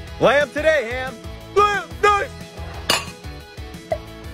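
Plastic lid pulled off a tub of fresh dog food, with a single sharp click about three seconds in, over background music with short rising-and-falling vocal cries.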